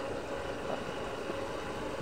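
A steady low rumble of a vehicle moving slowly along a dirt road, with no distinct knocks or changes.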